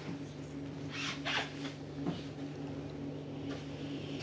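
Close, soft kissing: a few wet lip smacks, the clearest about a second in, over a steady low hum.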